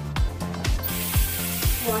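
Background music with a steady beat of about two kicks a second. A little before halfway through, a bathroom sink faucet is turned on and tap water starts running into the basin with a steady hiss.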